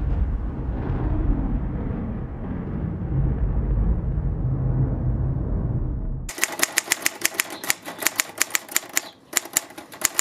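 A low, steady rumble for about six seconds that cuts off abruptly, then rapid keystrokes on a manual typewriter, several sharp strikes a second, with a short pause near the end.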